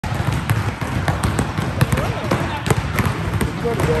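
Several basketballs being dribbled at once on a gym floor, sharp bounces coming quickly and unevenly as they overlap.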